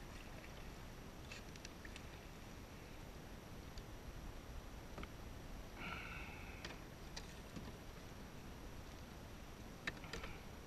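Faint sound of a kayak paddle and deck gear being handled on a plastic sit-on-top kayak: a few light clicks and knocks, and one short squeak about six seconds in.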